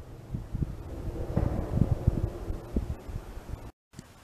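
Wind buffeting the camera's microphone outdoors: an uneven, gusty low rumble with no voice, which cuts off suddenly just before the end.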